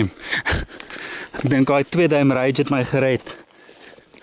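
A man's voice for a second or two in the middle, over a few crunches of footsteps through dry grass and brush.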